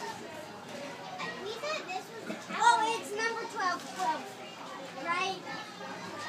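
Children's voices chattering and calling out, with no words clear.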